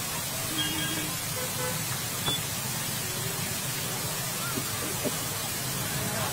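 Steady rushing noise with a low rumble underneath, broken by a few faint brief tones and two light knocks.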